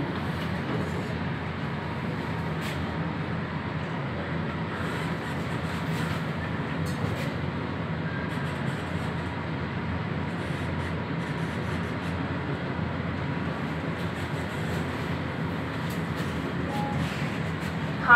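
Schindler 1600 kg passenger lift car travelling upward between floors: a steady low rumble and hum of the ride.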